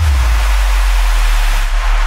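Electronic TV title sting: a loud rushing whoosh over a deep bass drone, with a brighter swish near the end.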